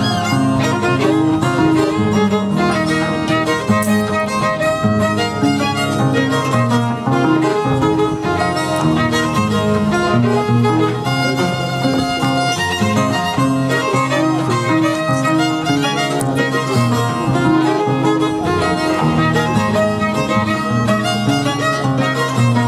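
Large wooden Andean harp playing a traditional tune, with plucked bass notes under a sustained higher melody line.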